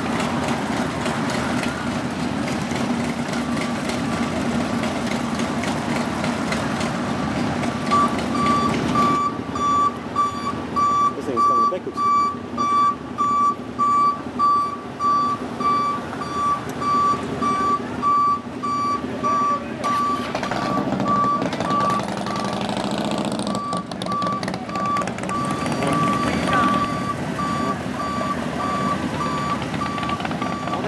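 Vehicle reversing alarm beeping steadily, about three beeps every two seconds, from a white stretch Hummer limousine backing up; it starts faintly a few seconds in, grows loud, pauses briefly, then resumes. A low engine rumble from idling motorcycles underlies the first part.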